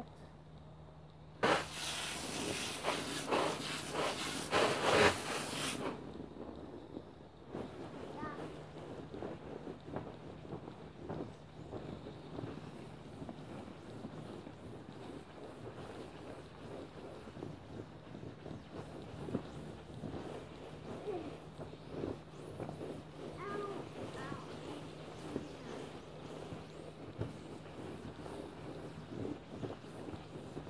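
Garden hose spray nozzle hissing onto a cloth glove-mitt for about four seconds, starting a second or two in. Then the wet mitt rubs and scrubs across the vinyl floor of an inflatable pool, wiping off mildew, a softer uneven rustling.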